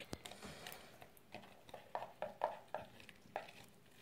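Faint, wet squelching of soft green slime being squeezed and kneaded in the fingers, with a small click at the start and several short, quiet sticky pops spread through.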